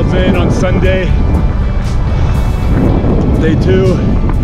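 Wind buffeting the microphone of a camera on a moving bicycle, a heavy steady rumble, with background music and a voice over it.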